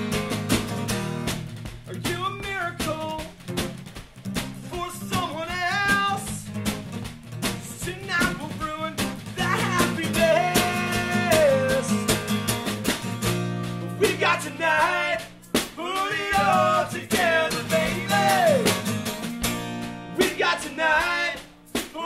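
A man singing a punk song in phrases over a strummed acoustic guitar, with a snare drum keeping time.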